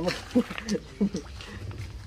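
A man laughing: four short voiced bursts in the first second or so, then only a low background hum.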